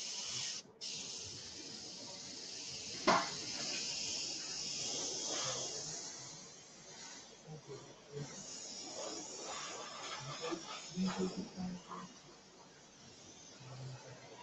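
Airbrush spraying satin varnish used straight from the bottle, unthinned: a steady hiss of air and paint that eases off about six seconds in, then a second, shorter spell of hiss. A single knock about three seconds in.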